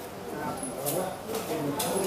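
Indistinct background talk of people at the range, with two faint short clicks, one about a second in and one near the end.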